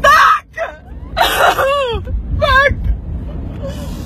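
A woman's distressed, wordless cries in three short, high, wavering bursts, over the steady low rumble of a moving car.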